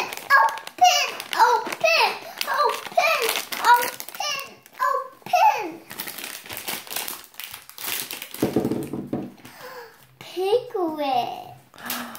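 A young child's high voice chattering, then from about six seconds in the crinkling and tearing of a plastic blind-bag toy pack being pulled open, with the child's voice again near the end.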